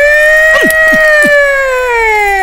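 A man's voice holding one long, high, loud 'aaah' note, rising slightly and then sagging in pitch, as a comic wail. A few short downward-sliding sounds run underneath it in the middle.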